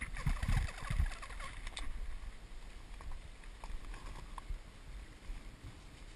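Bow drill fire set being worked: the wooden spindle rubbing and squeaking in its hearth board as the bow strokes back and forth, loudest in the first two seconds with a few low thumps, then fainter scattered creaks and ticks.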